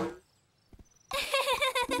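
Cartoon voices laughing, starting about a second in, after a short cry at the start and a brief near-silence with a few faint taps.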